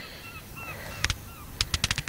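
Distant birds giving a series of short repeated calls, with a sharp click about a second in and a quick run of clicks near the end.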